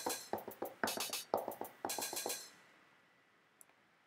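Drum-machine samples triggered one by one from controller pads: a quick, uneven string of short hits, among them sizzling TR-909 open hi-hat strokes, stopping about two and a half seconds in.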